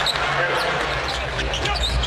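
A basketball dribbled on a hardwood court over the steady noise of an arena crowd.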